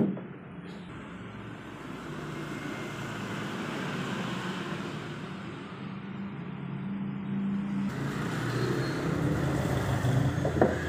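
Motor vehicle traffic noise with engine hum that swells gradually over several seconds and stays up; a single short knock right at the start.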